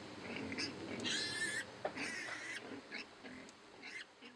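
A sow and piglets grunting as they root around, with one short high squeal about a second in.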